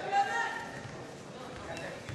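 Faint voices shouting across a large gym, over the hall's steady background noise.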